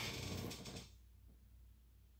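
A brief rustle of handling noise, under a second long, as a hand mirror is picked up and moved, then a faint steady low hum.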